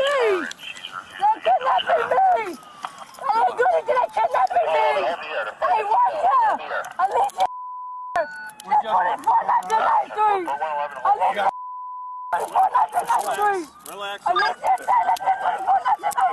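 A woman shouting and crying out in distress, cut twice by a steady censor bleep, each under a second long: once about halfway through and again about four seconds later.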